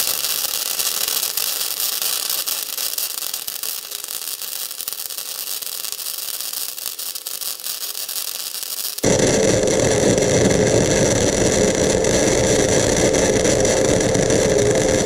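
Crackling, hissing arc of a Titanium 125 flux-core wire-feed welder laying a bead. About nine seconds in the sound cuts abruptly to a louder, fuller recording of the same welding.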